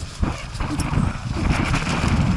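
Mountain bike rolling fast down a gravel trail, heard from a helmet-mounted action camera: tyres crunching over loose stones and the bike rattling and knocking over bumps, under a heavy low rumble of wind on the microphone. The tyre hiss grows louder near the end.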